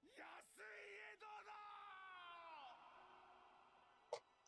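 Very faint, turned-down anime audio: a voice shouting a long call that slides down in pitch and stops nearly three seconds in.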